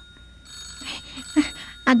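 A brief pause in spoken dialogue, filled by a faint low hum and thin, steady high-pitched tones, with a few faint breathy sounds. A voice starts speaking again near the end.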